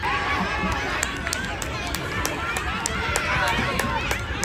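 Many high children's voices shouting and calling out at once during a youth football game, with a run of short, sharp clicks over it.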